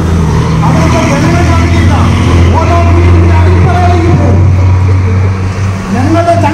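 A bus engine running with a deep, steady drone close by, loudest in the middle, as the bus moves off. A man talks through a microphone over it.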